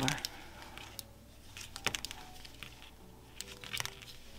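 Knitting needles clicking faintly and irregularly a few times as stitches are worked, with soft rustling of bulky yarn.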